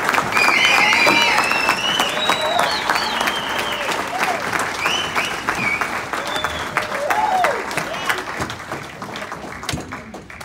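Audience applauding and cheering, with high whoops and shouts over the clapping. The applause slowly dies down toward the end.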